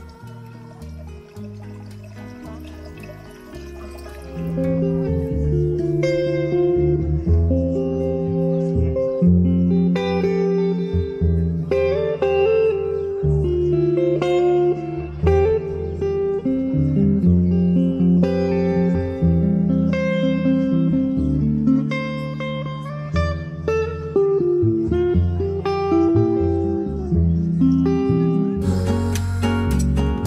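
Live jazz trio music: a plucked upright double bass under an archtop electric guitar. The music is quieter at first and becomes much louder about four seconds in.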